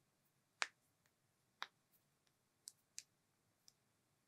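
About five small, sharp clicks at irregular intervals from fidgeting hands, in an otherwise near-silent room.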